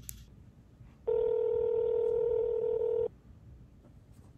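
Telephone ringback tone heard over the phone line: one steady ring about two seconds long, starting about a second in. It means the call is ringing at the other end and has not yet been answered.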